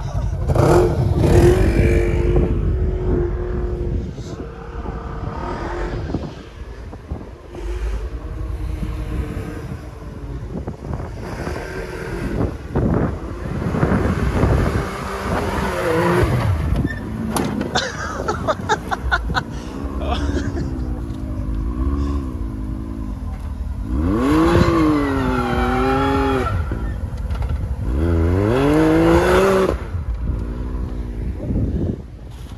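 Side-by-side UTV engines running and revving while driving through deep snow; in the second half the engine pitch swings up and down again and again in long revs.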